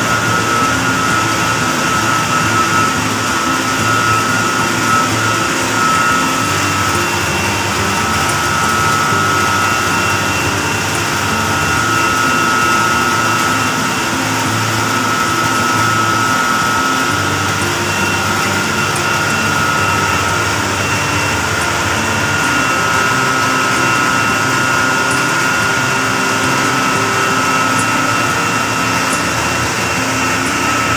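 Electric-motor-driven condenser water pumps running: a loud, steady machine hum with a high whine held throughout.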